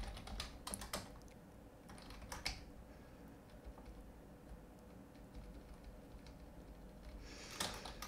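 Computer keyboard keystrokes: a few scattered key presses in the first couple of seconds, then only a faint steady hum.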